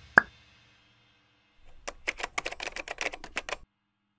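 The drum-backed outro music ends on one last sharp hit. After a pause of about a second comes a quick run of about fifteen clicks lasting nearly two seconds.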